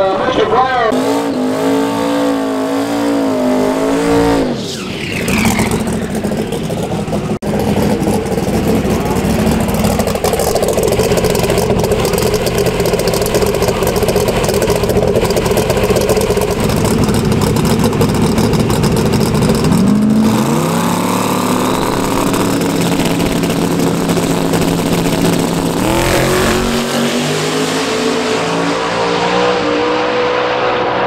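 Small-tire drag race cars' engines. They rev up and down in the first few seconds, then run loud and steady for a long stretch. Near the end comes a run with the engine pitch climbing steadily.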